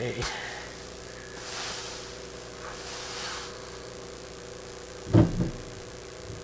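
Soft rustling of a large piece of hand-dyed fabric being handled and spread out on a worktable, in two brief swishes about a second and a half in and about three seconds in.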